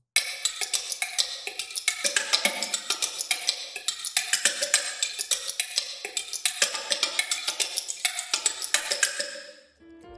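Sampled pocket-watch ticks and tocks played from a keyboard as a fast, irregular rhythmic pattern, the clicks set at several different pitches. The pattern fades out near the end.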